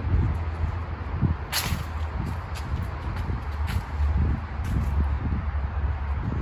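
Handling and wind noise from a phone carried on a walk: a steady low rumble with irregular soft thumps and rustles, and one brief sharp rustle about one and a half seconds in.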